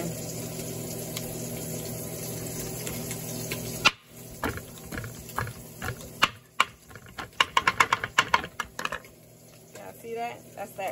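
A steady hiss for about four seconds that cuts off suddenly. Then a kitchen knife chops sausage on a bamboo cutting board: a few scattered strikes, then a quick run of chops, before it goes quiet near the end.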